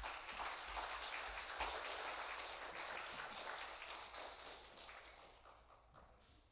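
Audience applauding, a dense patter of many hands clapping that dies away about five seconds in.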